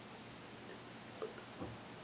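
Quiet room tone with two faint clicks about half a second apart, a little after a second in.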